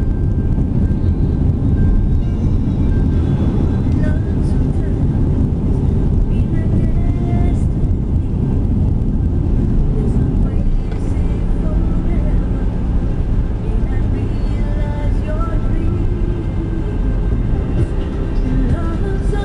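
Steady engine and tyre rumble heard inside a moving car's cabin. Faint music and a voice can be heard under it.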